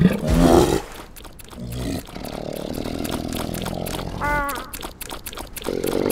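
Cartoon polar bear growling: a short vocal grunt at the start, then a long low growl, a brief falling cry just past four seconds, and another growl near the end.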